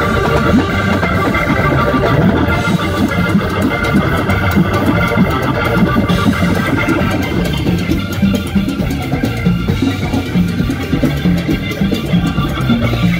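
Live Latin rock band with an electric organ sound played on a stage keyboard to the fore: sustained organ chords and lines over a dense drum and percussion groove.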